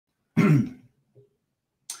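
A man clears his throat once, briefly, then takes a short breath near the end.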